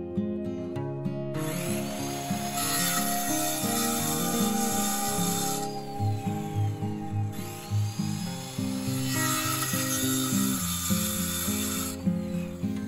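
Circular saw cutting through OSB sheathing in two runs. The blade winds down with a falling whine about halfway through, then spins back up and cuts again. Acoustic guitar music plays underneath.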